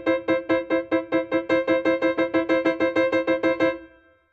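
Piano playing one staccato interval, a sixth, struck over and over at about seven times a second. This is the fastest bouncing-wrist speed, the point where tension builds in the hand. The repeats stop just before the end.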